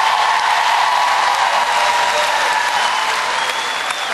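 Studio audience applauding, steady and loud.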